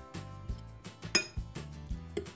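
Metal fork clinking and scraping against a glass bowl while sea buckthorn berries in honey are stirred, with a few sharp clinks, the clearest a little over a second in. Quiet background music runs underneath.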